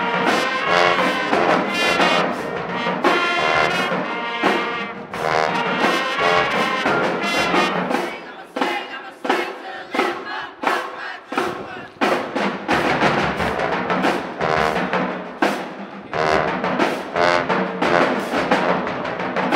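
A school band plays a rhythmic, horn-driven arrangement, with trumpets, trombones and sousaphones over a steady beat of sharp hits. The low brass drops out for a few seconds in the middle, leaving short stabs, then comes back in strongly.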